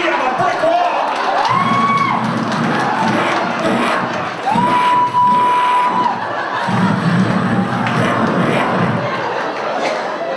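Comedy club audience laughing, cheering and shouting loudly, with two long, high whoops held for a second or more each.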